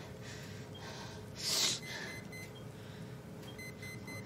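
A single short, sharp gasp of breath about one and a half seconds in, over faint, evenly spaced electronic beeps.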